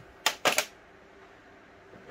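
A quick cluster of three or four sharp clicks of small metal parts, a hex key and bolts or magnets, being set down on a workbench.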